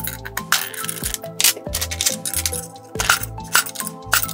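Background music over several sharp clinks as a hand-lever splitting press cuts a marble strip into small mosaic tiles and the stone pieces drop onto the steel bed.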